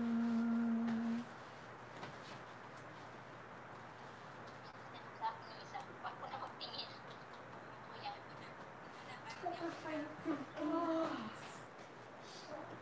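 A man's voice holding a long, steady "oh" for about a second, then quiet room tone with faint distant voices near the end.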